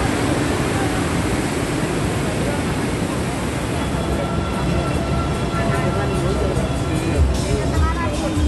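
Steady rush of breaking ocean surf, giving way about halfway through to indistinct voices of people talking, with music underneath.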